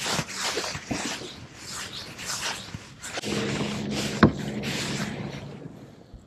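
A hooked bass thrashing and splashing at the water's surface beside the boat as it is landed, in short irregular bursts. A steady low hum joins for about two seconds in the middle, with one sharp click about four seconds in.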